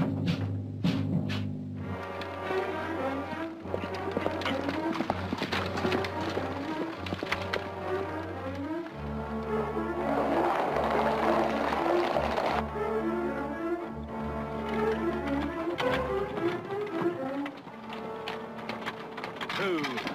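Dramatic orchestral underscore: sustained low notes shift a few times under a short melodic figure that repeats about twice a second. A rushing swell of noise rises about ten seconds in and drops away after a few seconds.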